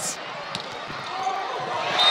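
Arena crowd noise in a volleyball hall swelling through a rally, with a sharp smack of the ball at the start and a fainter one about half a second in.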